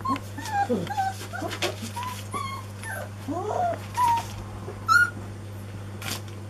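Four-week-old Anglo Wulfdog puppies yipping and whimpering as they play-fight: a string of short, high squeaks and yelps, with the loudest, sharpest yip about five seconds in. A steady low hum runs underneath.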